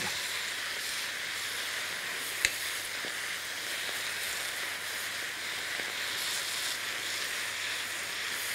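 Chopped Swiss chard sizzling steadily as it fries in a pan and is stirred with a wooden spatula, its water cooking off as steam. A single sharp knock sounds about two and a half seconds in.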